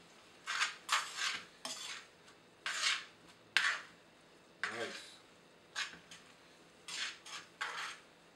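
Metal tongs scraping and clinking against a frying pan as pasta is tossed and stirred in its sauce: short, sharp strokes at irregular intervals, roughly one a second.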